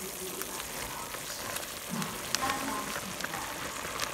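Broth of shredded carrot and seaweed simmering in a frying pan: a steady hiss with scattered small pops of bursting bubbles.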